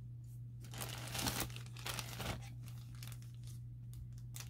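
Packaging crinkling and rustling as it is handled, in irregular crackles starting just under a second in.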